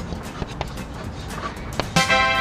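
Low, steady background rumble with scattered faint clicks, and one sharp click shortly before the end.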